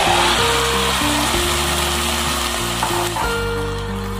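Wet grated-coconut and jaggery filling sizzling as it is tipped into a hot non-stick pot. The hiss is loudest at first and slowly dies down, with background music underneath.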